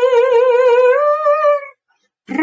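A solo voice holds one long high note with vibrato, stepping up slightly about a second in, then stops short of the end.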